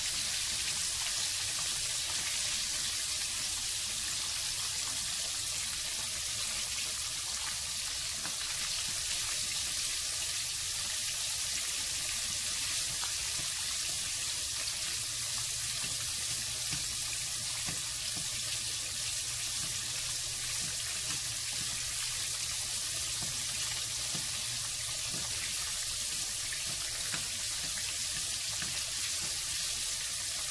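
Jack crevalle fillet frying in hot corn oil in a frying pan: a steady, unbroken sizzle, with oil being spooned over the top of the fish to speed the cooking.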